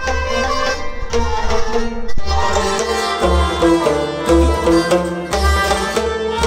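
Traditional folk music: a clay pot drum beaten by hand, giving a deep bass stroke about once a second, under a stringed instrument playing the melody.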